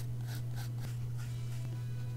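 Several soft, short strokes of a paintbrush laying gouache on sketchbook paper, over a steady low hum.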